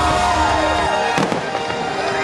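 Fireworks bursting over the show's music soundtrack, with one sharp bang about a second in.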